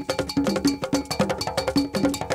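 Traditional Ghanaian percussion music: a bell struck in a fast, steady pattern over pitched drums, several strokes a second.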